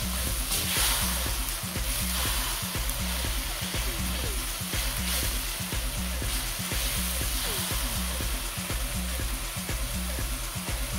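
Curry paste and spring onions frying in hot oil in a wok, with a steady sizzle. A silicone spatula stirring and scraping against the wok adds frequent short clicks.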